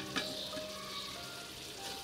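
Keema (minced meat) frying in oil in a pressure cooker, a soft steady sizzle.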